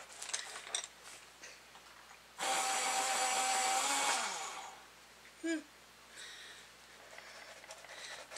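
Electric pencil sharpener running for about two seconds as a colored pencil is ground in it, the motor's pitch dropping as it winds down. The owner finds it is not sharpening the pencils evenly.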